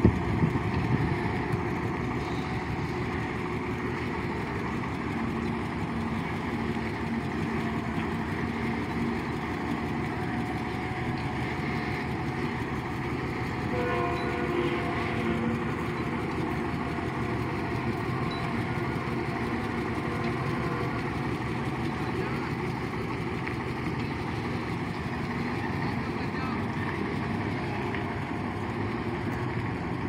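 Heavy diesel engine of a Mitsubishi truck pulling a flatbed trailer running steadily at low speed while it manoeuvres and reverses.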